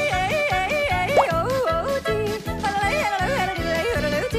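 A woman yodeling a cheerful Alpine yodel song over a bouncy rhythmic accompaniment. Her voice flips quickly between low and high notes several times a second on syllables like "lay-ee-ay-ee" and "lalale-ootee".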